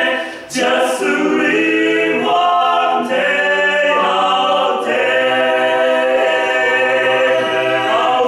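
Male vocal quartet singing a cappella in sustained close-harmony chords, with a brief break and a sharp hissy consonant about half a second in.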